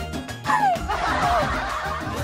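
Background music with a steady beat. About half a second in, a loud high squeal slides down in pitch and runs into laughter for about a second.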